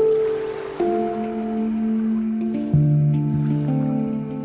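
Handpan played with the hands: single notes struck about every half second to second, each ringing on and overlapping the last. A deeper, louder note comes in near three seconds in.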